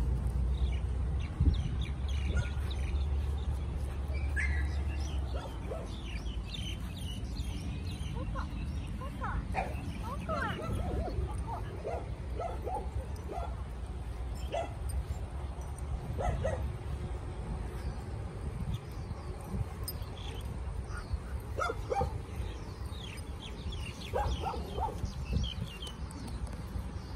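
Dogs barking and yipping now and then, in short scattered calls, over a steady low rumble.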